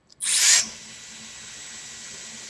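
Hair dryer styling wand switching on: a loud rush of air just after the start settles within half a second into a steady airflow hiss with a thin high motor whine.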